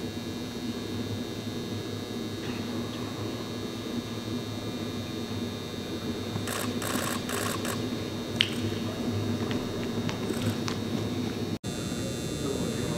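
Rapid bursts of SLR camera shutter clicks, a run of them about halfway through and a few more near the end, over a steady hum.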